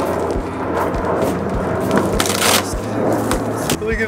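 Cardboard shipping box being torn open and plastic wrapping crackling as a long exhaust pipe is pulled out of it, with a louder rip about halfway through.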